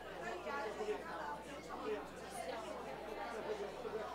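Indistinct background chatter: people talking among themselves in a meeting room, with no single clear voice.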